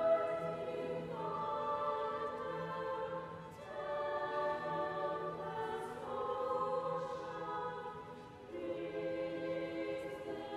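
Choir singing slow, sustained chords that change to a new chord about every two and a half seconds.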